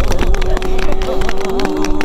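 A small group applauding with gloved hands, many quick claps, over a steady hum that drops a little in pitch near the end.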